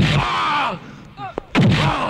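Two heavy film punch sound effects about a second and a half apart, each a sudden hard hit followed by a man's pained cry.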